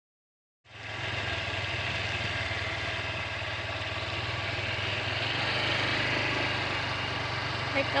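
An engine idling steadily, starting about a second in.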